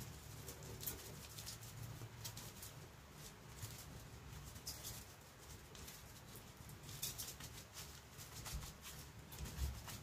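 Seasoning shaken from a plastic shaker bottle into a stainless steel bowl: faint, scattered pattering ticks over a low steady hum.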